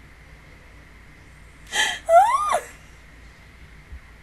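A woman's sharp gasp, followed at once by a short high-pitched squeal that rises and then falls: an excited vocal reaction.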